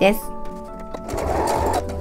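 Domestic sewing machine running in one short burst of under a second, about a second in, stitching a metal zipper onto canvas fabric.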